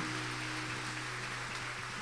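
Faint audience applause, an even patter of clapping, with a low steady hum underneath.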